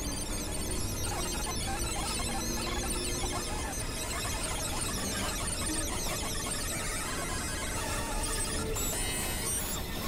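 Experimental electronic noise music from synthesizers: a dense, unbroken wash of noise with many short, flickering high-pitched tones over a low rumble.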